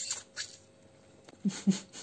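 Slurping the broth out of a bitten khinkali dumpling: a wet, hissy slurp at the start and a shorter one about half a second in, then two short throaty sounds near the end.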